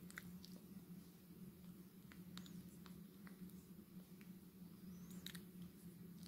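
Near silence: room tone with a faint steady low hum and a few faint, scattered ticks.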